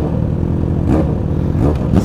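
Yamaha XJ6 inline-four motorcycle engine idling at a standstill, with short throttle blips about a second in and near the end.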